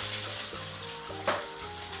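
A freshly cracked egg and a meat flatbread frying in oil in a cast-iron skillet, sizzling steadily, with one brief louder crackle a little over a second in.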